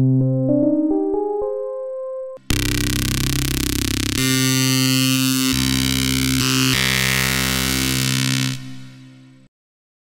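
Xfer Serum software synthesizer playing randomly hybridized lead presets. First comes a rising run of notes. After a brief break a brighter, buzzy sustained lead plays a few changing notes and fades out about a second before the end.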